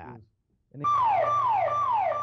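Home security alarm siren going off after being tripped by an intruder. It sounds a repeated electronic whoop, each one holding a high tone and then sweeping down, about two a second, starting just under a second in over a low steady hum.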